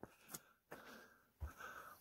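Near silence, broken by a few faint scuffs of footsteps on granite.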